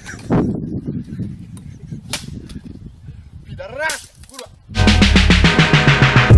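Rough outdoor handheld-phone audio with a low rumble, a few sharp knocks and a brief cry. Loud electronic intro music with a beat then cuts in abruptly near the end.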